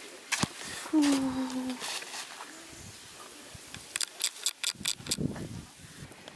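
A short hummed voice sound, falling slightly in pitch, then a quick run of sharp clicks and a brief murmur, against quiet outdoor background.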